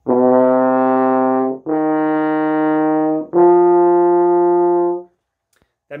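French horn playing three sustained notes, each about a second and a half long, rising step by step. This is the C–D–E pattern pitched too low: the horn is sitting on a lower set of notes than the intended C, D and E.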